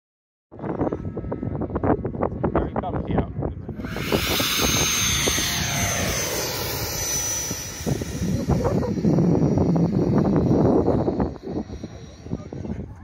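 Radio-controlled glider rushing past close by after a hand launch, a loud airflow hiss that falls in pitch over about four seconds. Wind buffets the microphone throughout.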